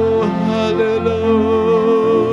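A worship song: a singer holds long notes with vibrato over sustained chords on an electronic keyboard.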